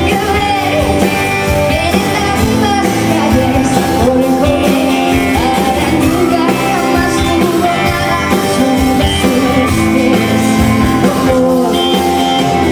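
A live pop-rock band performing: a female lead vocal over strummed acoustic guitar and electric guitar, with a steady beat underneath.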